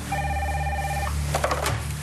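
Telephone ringing: one warbling electronic ring about a second long, followed by a few clicks as the handset is picked up.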